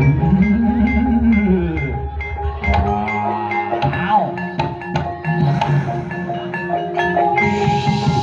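Live Banyumasan ebeg accompaniment: mallet-struck keyed instruments ringing a steady, repeating pattern over kendang hand-drum strokes, with a low tone that slowly rises and falls in pitch in the first two seconds.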